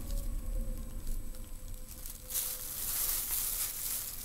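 Rustling and crinkling as something is handled, starting a little past two seconds in, over a low handling rumble.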